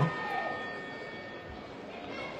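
Low background arena noise at a boxing match, with faint steady ringing tones that fade over the first second or so.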